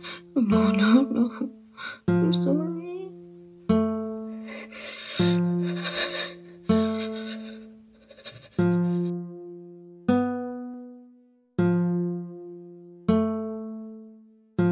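Slow plucked guitar chords, one struck about every one and a half seconds, each ringing out and fading. A character's crying and wailing runs over the first few seconds.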